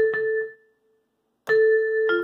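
Yamaha PSS-A50 mini keyboard's vibraphone voice: a single note dying away within about half a second, a short silence, then another note of about the same pitch struck near the end.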